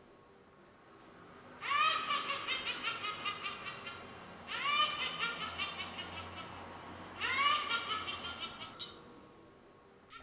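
A witch's cackling laugh sound effect played by the pumpkin's Arduino-driven MP3 module. It comes three times, each cackle opening with a rising shriek and breaking into rapid "ha-ha" pulses that trail off.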